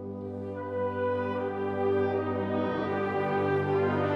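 Wind ensemble holding a sustained, brass-heavy chord that grows louder about a second in.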